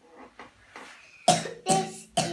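Two short, sharp coughs in quick succession, about a second and a quarter in and again about half a second later, after some faint soft voice sounds.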